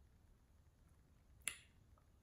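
Near silence broken by a single sharp mouth click, a lip smack or tongue click, about one and a half seconds in.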